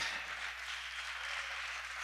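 Faint room tone through the sound system: a low steady hum under a soft hiss.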